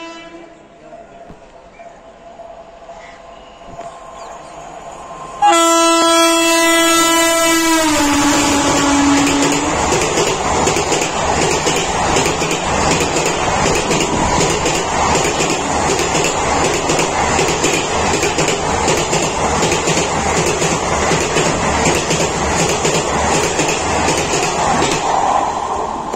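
Indian Railways WAP-4 electric locomotive hauling the 12695 Superfast Express through a station at speed: its horn blasts loud and suddenly about five seconds in and drops in pitch as the engine passes. Then a long rake of sleeper coaches rushes past, with a fast, even clatter of wheels over the rail joints.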